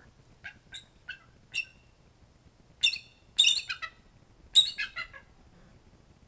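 Bald eagle calling: a few short high chirps, then three louder runs of rapid, high piping notes that step down in pitch.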